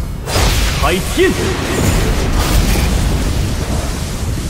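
Cinematic fight sound effects for a huge sword strike: a sudden loud blast just after the start, then a continuous deep rumble with booms, under a man's shouted battle cry.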